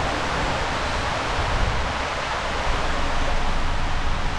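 Steady rushing noise of water and a rider's mat sliding fast through an enclosed waterslide tube.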